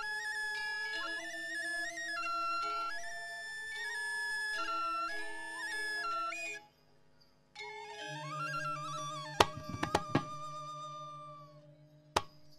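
Balinese gamelan accompaniment in which suling bamboo flutes carry a sustained, stepping melody that breaks off abruptly a little past halfway. After a short pause they resume with a rising note, and a quick cluster of sharp percussive strikes, the loudest sounds here, hits just before the ten-second mark.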